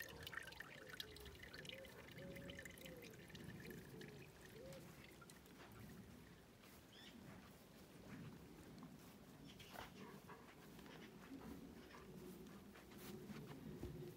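Faint trickling and dripping of rainwater running off a wooden post into a rainwater tank as it refills in light rain.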